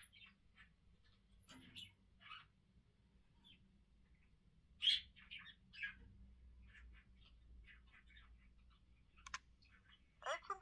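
Faint, scattered short chirps like small birds calling, over a low steady hum, with a sharp click about nine seconds in.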